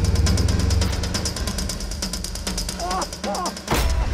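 Motorcycle engine running with a rapid, even putter of about ten pulses a second, which fades out about two and a half seconds in. Near the end comes a single loud hit.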